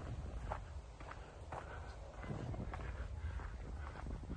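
Footsteps of someone walking, about two steps a second, over a steady low rumble.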